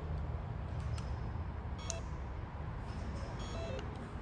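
Room tone with a steady low rumble, a faint click a little under two seconds in, and a couple of faint short electronic beeps near the end.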